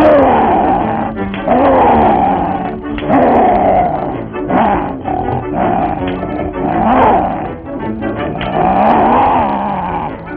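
Cartoon lions roaring: a run of about six loud roars, each falling in pitch, coming roughly every second and a half over band music.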